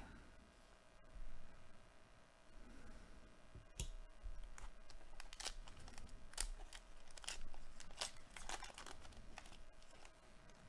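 Hands tearing open and crinkling a plastic trading-card pack wrapper: faint, scattered crackles that come thick and fast from about four seconds in.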